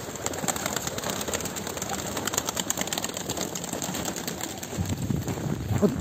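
A flock of domestic pigeons fluttering down to feed: a dense, continuous patter of wingbeats and scuffling.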